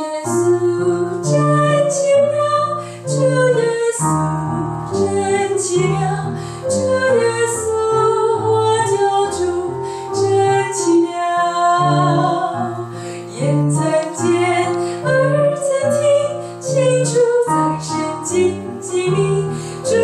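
A woman singing a Mandarin children's hymn with piano accompaniment.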